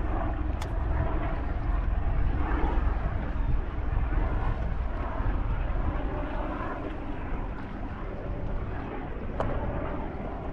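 Steady low rumble of wind buffeting the microphone on open water, with two sharp clicks, one about half a second in and one near the end.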